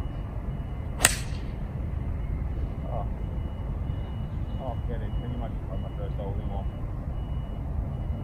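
A single crisp click about a second in as a TaylorMade P790 UDI 17-degree driving iron strikes the golf ball off the tee. A steady low rumble runs underneath.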